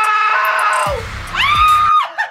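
A man screaming with excitement: two long high-pitched screams, the second rising and then cutting off just before the end. Music plays under it, with a deep falling bass sweep about halfway through.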